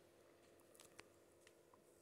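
Near silence: room tone with a faint steady hum and a couple of faint ticks.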